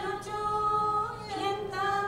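A small group of women singing an Indian devotional song together without instruments, holding long sustained notes that move to a new pitch about halfway through.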